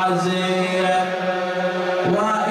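A man chanting a mournful Arabic elegy into a microphone, holding one long, steady melodic note that changes to a new note right at the end.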